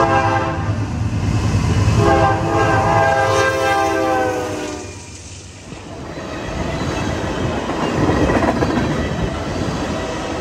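Freight locomotive horn, a multi-tone chord: a short blast at the start, then a long blast of about three seconds, over the low rumble of the passing locomotive. Then the rolling rumble and wheel clatter of tank cars passing close by.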